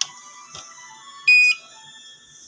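A UMS ultrasonic therapy unit being switched on: a click of the power switch, then one short, high electronic beep about a second in as the machine powers up and its start screen comes on.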